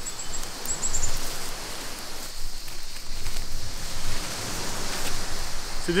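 Steady outdoor rushing noise with uneven low rumbles, and a few short, high insect chirps within the first second.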